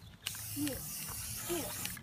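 Aerosol spray-paint can spraying in one steady hiss, starting about a quarter second in.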